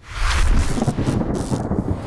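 Thunder sound effect opening a logo sting: a loud, low rumble with a rain-like hiss that starts suddenly and keeps going, with a brief dip in the hiss near the middle.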